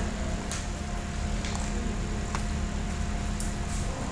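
Steady background hum and hiss of a recording microphone, with four faint, evenly scattered clicks of the kind a computer mouse makes.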